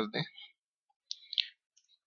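A few quick clicks from a computer mouse and keyboard, a little over a second in, as the letter r is put into a line of code.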